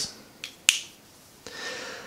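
A faint tick, then one sharp click as a pen is handled over the desk. About a second later comes a soft rustle of a hand brushing across paper.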